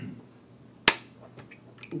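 A single sharp knock, short and loud, about a second in, followed by a few faint clicks near the end.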